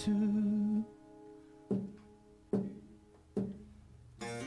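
A held sung note ends just under a second in, then an acoustic guitar plays three strummed chords, about one every second, each left to ring and fade.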